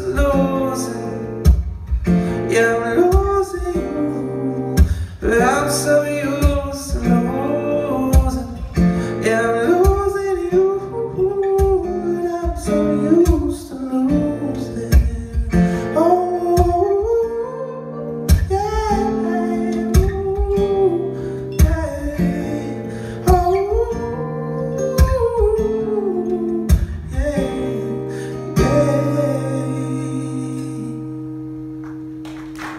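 Live solo acoustic guitar music with a steady percussive beat and a wordless, gliding sung melody line. The song winds down and fades near the end.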